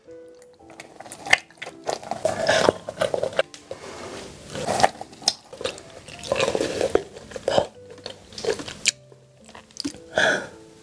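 Close-miked, wet biting and chewing of soft braised soy-sauce pork belly, in irregular smacks and squelches, over quiet background music.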